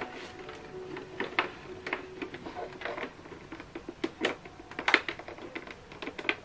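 Irregular light clicks and knocks of hands handling a plastic inkjet printer's casing and pushing a USB cable plug into its rear port, with a few sharper clicks.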